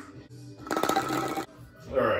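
Guinness poured from a can into a pint glass, glugging briefly for under a second near the middle. Irish music plays in the background.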